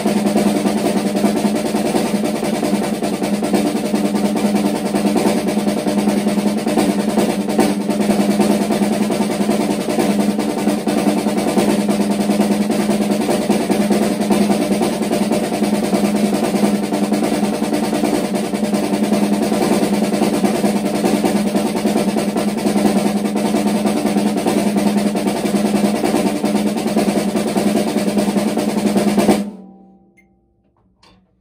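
Snare drum played with sticks in a fast, even stream of sixteenth notes: the paradiddle exercise cycling between single and double strokes. It stops suddenly near the end.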